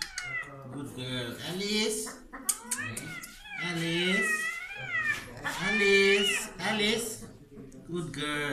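A cat yowling in distress while it is held down for treatment: several long, wavering cries that rise and fall in pitch, one after another.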